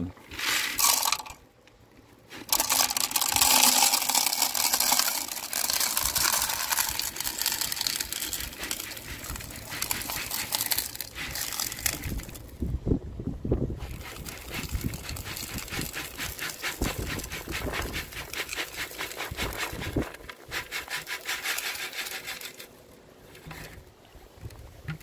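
Crushed-stone ballast poured into a G scale model hopper car, the gravel clattering and rattling as it fills the car. It comes in several pours with short breaks about two seconds in and again near the middle.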